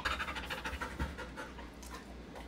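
Siberian husky panting rapidly with her mouth open, the panting strongest in the first second and then easing off.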